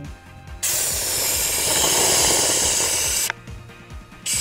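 CO2 cartridge inflator blasting compressed gas into a plastic soda bottle: a loud hiss that starts about half a second in, runs for nearly three seconds and cuts off suddenly.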